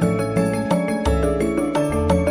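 Background music: an instrumental tune of short, quickly changing notes over a bass line.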